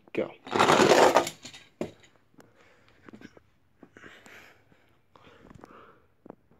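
Two toy monster trucks released down a plastic ramp track: a loud rattling rush of wheels on the track about half a second in, then scattered light clicks and knocks as they roll on.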